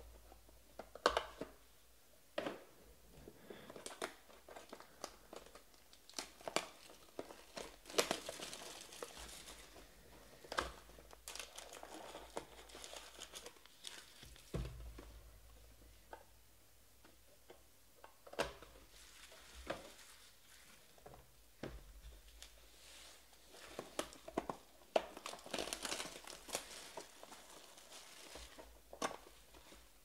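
Trading card packs of 2020 Panini Stars and Stripes baseball being torn open and their wrappers crinkled, with cards and cardboard boxes handled in between. A string of sharp clicks and taps, with several longer stretches of crinkling.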